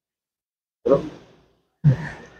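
Two short, breathy vocal exhalations from a person, like sighs or the start of a laugh: one about a second in and another near the end, each trailing off quickly.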